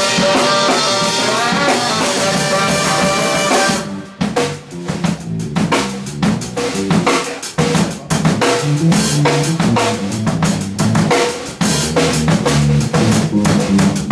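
Live funk-jazz band jamming. About four seconds in, the sustained chords drop out and the drum kit carries on alone with a busy groove of regular strokes.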